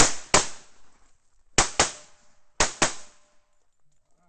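Pistol shots: a single shot, then two quick pairs about a second apart, each pair fired within about a fifth of a second, as the shooter engages targets with double taps.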